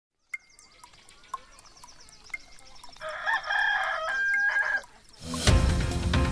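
A clock ticking fast, about four ticks a second, with small birds chirping and a rooster crowing in the middle. About five seconds in, a loud music jingle starts.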